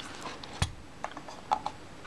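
A few small clicks and taps of a partly stripped Mamiya Family SLR camera body being handled and turned over in the hands, the sharpest about half a second in.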